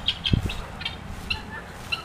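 Birds chirping in short, repeated high calls, with one low thump about a third of a second in.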